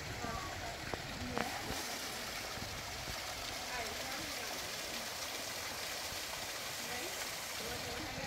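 Small waterfall, thin streams of water running down a rock face and splashing into a pool: a steady rushing hiss.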